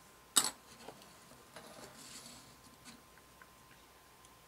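A hobby tool set down with one sharp tap, then a lighter tick, soft rustling as small plastic kit parts are handled, and a few faint clicks.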